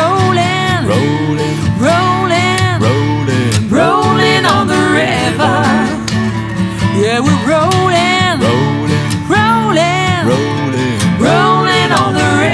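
Acoustic guitars strummed steadily while a woman and a man sing together in repeated phrases.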